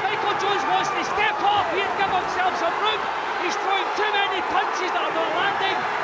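Boxing arena crowd shouting and cheering: many voices overlapping at once, holding steady throughout.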